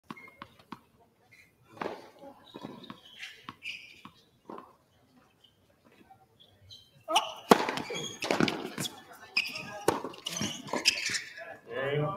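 A tennis ball is bounced a few times before a serve, with scattered short knocks. From about seven seconds in the point is played: racket strikes and ball bounces under a man's voice.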